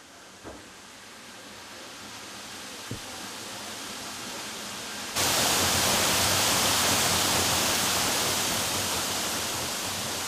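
Waterfall, about 50 feet tall, pouring into a plunge pool: a steady splashing rush. It is quieter at first and grows, then comes in much louder and closer about five seconds in.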